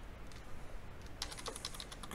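Typing on a computer keyboard: a few scattered keystrokes, then a quick run of key clicks in the second half.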